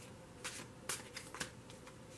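A tarot deck being shuffled by hand: a quiet run of about half a dozen short, crisp card snaps and clicks, the sharpest a little under a second in.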